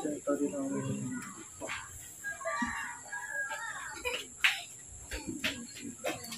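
Indistinct voices in the background, with a bird's call among them.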